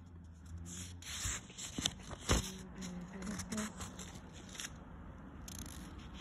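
Faint rustling and scraping of a paperback book's paper pages being handled and turned by hand, with a few short soft ticks.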